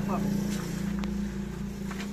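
A steady, low engine drone with an even hum that holds throughout, with a brief voice fragment right at the start.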